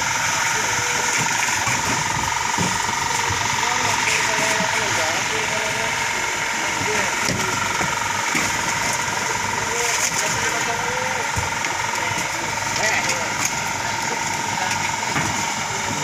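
An engine idling steadily, with indistinct voices talking in the background.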